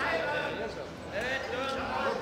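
Men's voices talking and calling out, the words not clear, with a short lull about halfway through.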